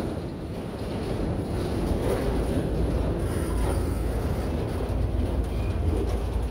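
Autorack freight cars rolling slowly past on the rails: a steady low rumble of wheels on track.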